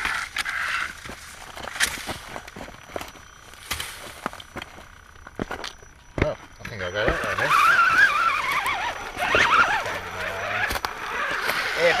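Scattered clicks and knocks of a radio-controlled rock crawler working over rock and dry leaves, with a sharp thump just after six seconds as a foot steps down beside the camera. A voice calls out wordlessly in the second half.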